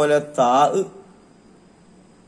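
A man's voice reciting Arabic verse in a melodic chant, stopping about a second in; after that only quiet room tone with a faint steady high whine.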